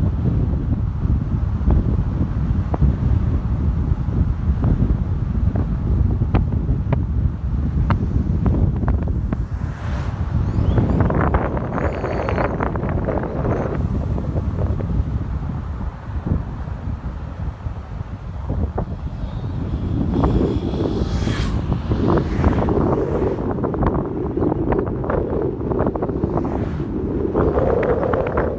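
Wind buffeting the microphone of a camera riding in a moving car, with the car's road noise underneath.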